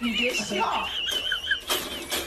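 A dog giving a long, high-pitched, wavering whine for about a second and a half, with people's voices under it.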